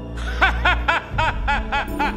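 A man laughing: a run of short, evenly spaced "ha" syllables, about four a second, starting about half a second in.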